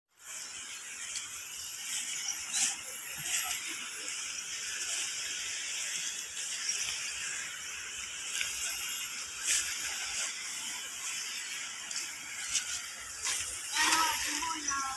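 A steady, high chorus of insects in the riverside grass and scrub, with a thin high whine that comes and goes. A few sharp crackles, twice standing out, break through it.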